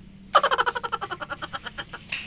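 An animal's rapid chirping call, starting about a third of a second in: a string of short clicks at about a dozen a second, loudest at first and fading away.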